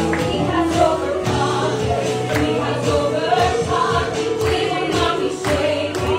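Gospel worship song: a worship team and congregation singing together over keyboard and band accompaniment with a steady beat.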